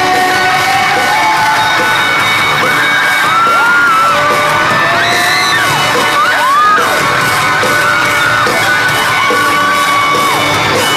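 A live rock band playing loudly in an arena, recorded from within the audience, with fans nearby screaming and singing along in high, gliding voices over the music.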